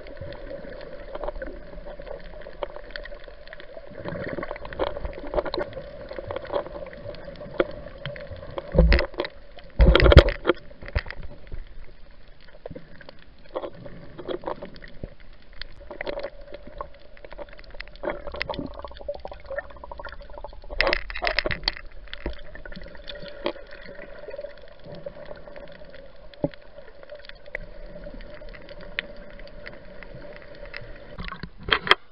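Water gurgling and crackling as heard underwater, over a steady hum, with a few loud knocks about nine and ten seconds in and again around twenty-one seconds.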